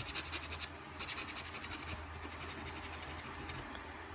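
A coin scraping the scratch-off coating off a paper lottery ticket in quick back-and-forth strokes, in a few short spells.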